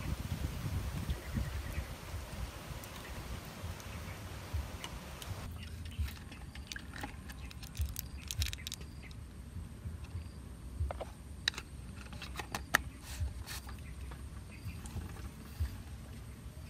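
Liquid trickling from a plastic bag for the first few seconds. Then plastic crinkling, with scattered sharp clicks and crackles, as a plastic sheet is pressed into the mouth of a plastic jar of eggs in brine and the screw lid is put on.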